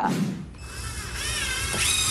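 Cordless drill driving a screw into a plywood sheet, its motor whine wavering up and down in pitch as the trigger is worked, rising briefly near the end.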